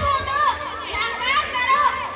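A crowd of schoolchildren talking and calling out over one another: many high-pitched voices at once.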